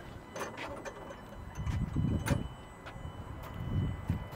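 Peterbilt 389's tilt hood being pulled open by hand: low rumbling with scattered clicks and knocks as it swings forward, one sharper clack about two seconds in.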